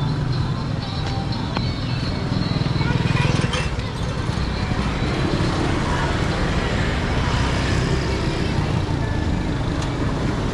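Street traffic: motorcycles and cars going by on a town road, a steady low engine rumble that swells briefly about three seconds in.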